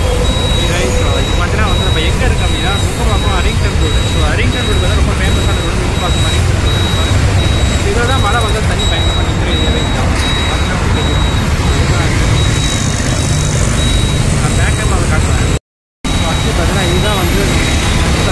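Steady wind rumble on the microphone and road noise from riding a motorcycle in city traffic, with a man's voice faintly under it. The sound drops out completely for a moment late on.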